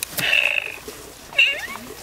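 Electronic meows from a FurReal Friends Daisy toy kitten: a longer meow near the start and a short one a little past halfway.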